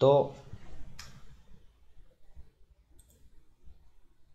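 A sharp click about a second in, then two faint clicks near the end: keys and mouse buttons clicked at a computer as terminal commands are entered.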